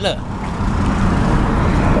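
Road traffic: a motor vehicle going by on the street, a steady engine and tyre rumble that swells about half a second in.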